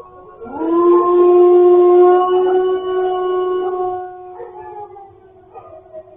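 A dog howling: one long howl that swoops up sharply about half a second in, holds a steady pitch for about three seconds, then fades away, with a fainter steady tone underneath.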